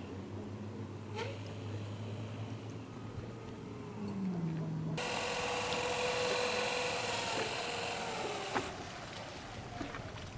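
Electric motor and propeller of the eLazair ultralight seaplane running as it taxis on the water: a steady low hum whose pitch slides down about four seconds in, then, after a sudden change about five seconds in, a steady whine with a hiss over it that eases off near the end.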